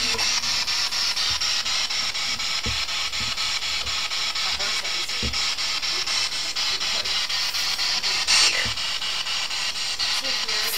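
Steady, loud hiss of static, with a few soft low thumps and a brief louder rush about eight seconds in.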